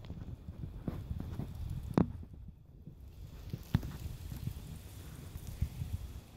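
Footsteps on paving: several sharp steps at an uneven pace, about one a second, over a low rumble.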